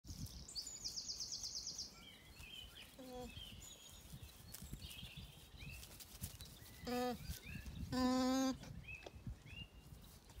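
Alpaca humming: short nasal hums about three and seven seconds in, then a longer, louder steady hum about eight seconds in. Songbirds chirp around it, with a rapid high trill near the start.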